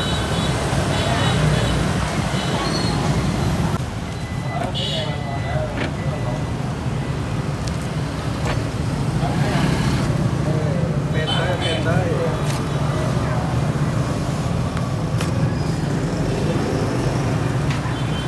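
Steady rumble of road traffic with people talking in the background, and a few short clicks and knocks in the second half.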